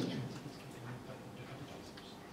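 Quiet room tone in a pause between spoken sentences, heard through a handheld microphone, with a few faint clicks; the voice fades out right at the start.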